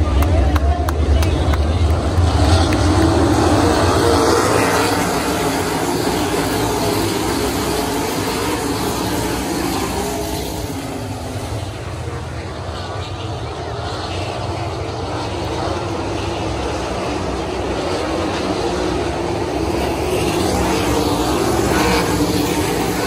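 A field of 410 sprint cars racing on a dirt oval, their V8 engines running hard at speed. The noise is loudest as the pack passes close at the start, fades somewhat about halfway through as the cars go to the far side, and builds again near the end as they come back around.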